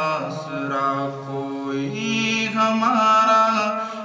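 Devotional chanting by voices in long held notes, the pitch stepping up about two seconds in.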